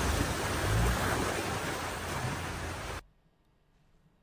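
Floodwater rushing and splashing as a Land Rover wades through a deep flooded road, a steady wash of water noise that slowly fades. It cuts off suddenly about three seconds in, when the footage is paused.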